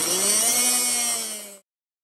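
Handheld rotary tool running at high speed while grinding down a bolt, its pitch sagging under load and then climbing back. The sound cuts off abruptly about one and a half seconds in.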